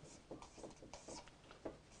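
Marker pen writing on a whiteboard: a faint string of short scratchy strokes.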